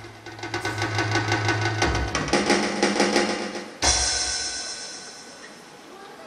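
Dramatic stage music with a rapid snare drum roll over a held low note, ending about four seconds in on one loud crash that rings away.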